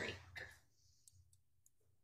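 Near silence with a few faint, brief clicks spread through the pause.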